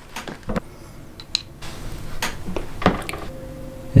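Large pliers crimping a metal ring lug onto a battery cable: a few separate clicks and creaks of metal as the jaws are squeezed and repositioned on the lug.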